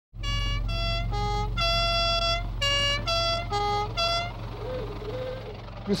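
A short tune of about nine held notes stepping up and down in pitch, one of them longer than the rest, followed by a faint wavering tone, over a steady low hum.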